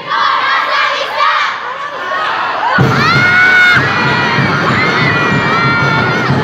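Many children's voices shouting and cheering together, with several long held shouts. About three seconds in, drumbeat music comes back in underneath.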